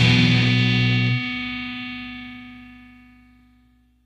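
The closing chord of a hardcore punk song: the full band cuts off about a second in, and a distorted electric guitar chord is left ringing, fading away steadily.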